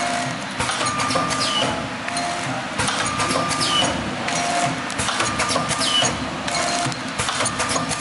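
DXD-50FB pneumatic (air-driven) vertical form-fill-seal powder packing machine running, cycling through a sachet about every two seconds. Each cycle brings a short steady tone, clicks and a short falling note.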